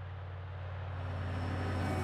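Keiler mine-clearing tank running with a steady, deep engine hum that grows louder about a second in.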